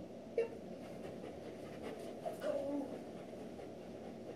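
A Doberman panting steadily, with one sharp click about half a second in and a short whine about two and a half seconds in.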